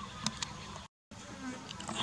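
Faint insect buzzing with a few sharp clicks. The sound cuts out completely for a moment near the middle.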